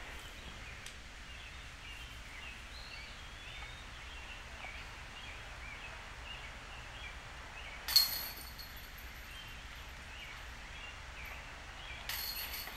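Faint outdoor ambience with scattered bird calls; about two-thirds of the way through, a putted disc strikes the chains of a disc golf basket: one sharp metallic clash with a brief ringing. A second clash comes right at the end.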